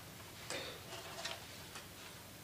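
A few light knocks and clicks of music stands and instruments being handled on stage, about four in two seconds, the first and loudest about half a second in.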